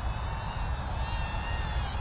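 Rotorious FPV Speck 80 brushed micro quadcopter in flight: a thin, insect-like buzzing whine from its 8.5×20 mm brushed motors and tiny props, the pitch wavering up and down as the throttle changes.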